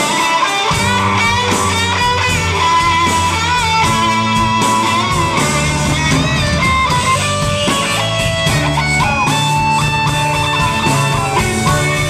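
A live rock band. An electric guitar plays a lead line with bent, sliding notes over bass guitar and drums.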